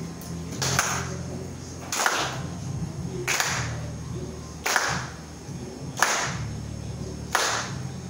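Audience clapping together in a slow, steady beat, about one clap every second and a quarter, with a low steady hum underneath.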